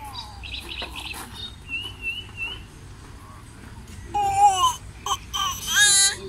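A baby's high-pitched squeals and babbling, in two loud bursts: one about four seconds in that falls in pitch, and a wavering, rising one near the end.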